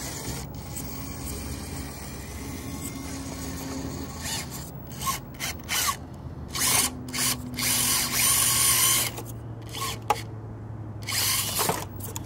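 Electric RC rock crawler climbing over rocks: its motor and geared drivetrain give a steady low whir at first, then a series of short, louder whirring bursts from about five seconds in as the throttle is blipped.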